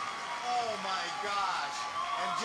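A man speaking over audience noise, played back from a television broadcast.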